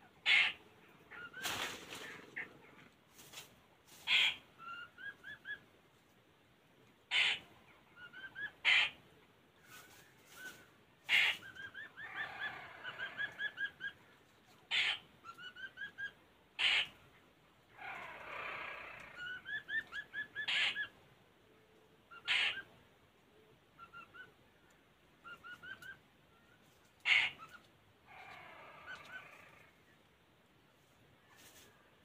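Laughingthrushes calling: repeated phrases of short rising whistled notes, sharp loud single calls, and a few longer harsh chattering bursts.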